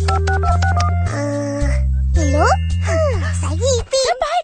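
Touch-tone telephone being dialed: a quick run of keypad beeps in the first second, over background music with a steady stepping bass line. From about two seconds in, wordless vocal sounds with sliding pitch take over.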